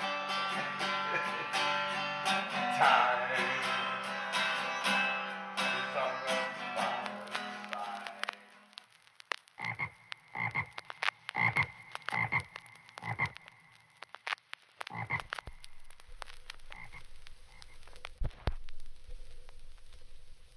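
Strummed acoustic guitar music that dies away about eight seconds in, followed by a run of short frog croaks, about two a second, in clusters with pauses between them.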